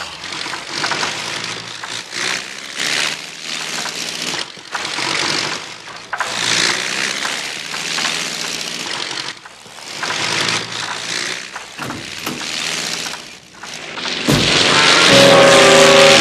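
Cartoon sound effect of a small propeller plane's engine, running unevenly and breaking up, mixed with orchestral score. About fourteen seconds in, a much louder, sustained musical passage swells up.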